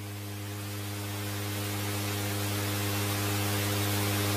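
Steady hiss with a low electrical hum from the microphone and sound system, slowly growing louder, with no voice on it.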